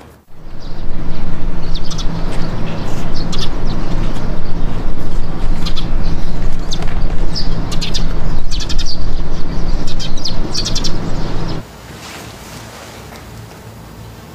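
Birds chirping in short, scattered calls over a loud, steady rushing outdoor ambience with a low hum underneath. About eleven and a half seconds in, it cuts off suddenly to a much quieter room tone.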